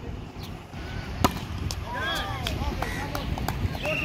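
A volleyball being hit by hand during a rally: one sharp smack about a second in, with a few fainter knocks, over players' distant voices.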